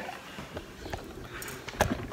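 Quiet handling sounds, then a single dull thud near the end as a small red electric cooker (Red Copper 5 Minute Chef) is pressed down onto a sheet of pie dough on a stone counter.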